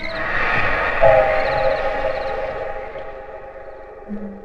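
A sustained chord of several steady tones, swelling about a second in and slowly fading, with faint repeating high chirps above it.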